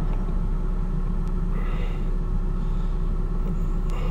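Steady low mechanical rumble with a faint constant hum, even in level and unbroken throughout.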